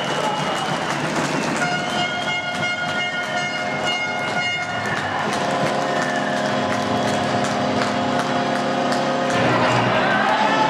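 Two long, steady horn blasts in a sports hall marking a floorball goal: the first starts about two seconds in and lasts about three seconds, and the second, lower one runs from about five seconds in to near the end. Sharp clacks of sticks and ball are heard underneath.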